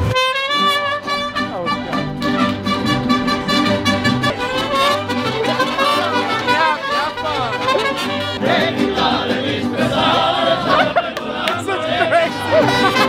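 Mariachi band playing with trumpets, violins and guitars, starting suddenly at full volume.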